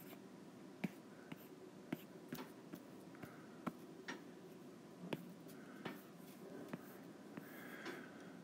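Faint, irregular taps of a stylus on a tablet's glass screen, a couple a second, over a low steady room hum.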